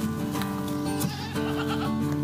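Background guitar music, with a goat bleating once, shakily, starting about a second in.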